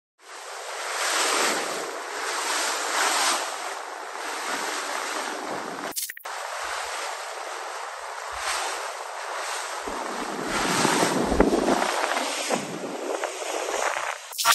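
Wind buffeting the microphone over water rushing and splashing past a moving small boat, swelling and easing, with a click and a short drop-out about six seconds in.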